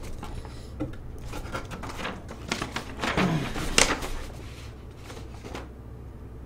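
Paper rustling and crinkling as a folded poster is unwrapped and opened out by hand. It comes as short irregular rustles, the loudest one a little before four seconds in, then quieter.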